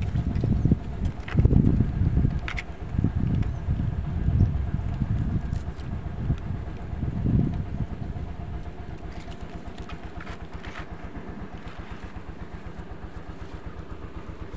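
A small engine runs steadily in the background throughout. Over it, in the first half, come low rumbling handling noises and a few light snaps as a hand works through dry bamboo twigs close to the microphone.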